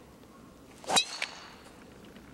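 A golf driver swishing through and striking the ball off the tee: one sharp, loud crack about a second in, with a brief ring after it, then a faint second tick.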